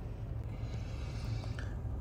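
Steady low hum inside a stopped Volkswagen Polo's cabin, with nothing else standing out.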